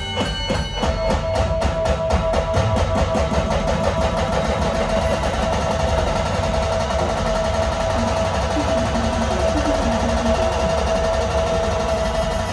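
Loud band music amplified through a truck-mounted speaker rig: fast, even drum strokes in a dhol-tasha style rhythm over a long held note and heavy bass.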